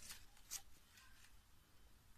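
Faint rustling and light clicking of artificial hydrangea flowers and stems being handled, with a sharper click about half a second in.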